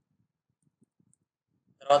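Near silence with a few faint computer keyboard key presses as a figure is typed in and entered, then a man's voice begins speaking near the end.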